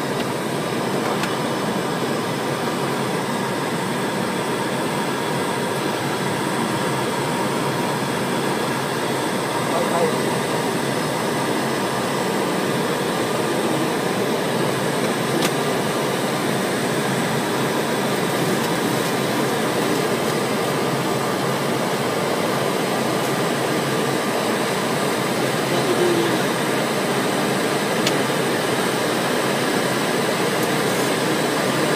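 Steady rushing noise of air and engines inside the cockpit of a heavily loaded Boeing 727-200 climbing out after takeoff, with faint steady whining tones over it and one small click about halfway through.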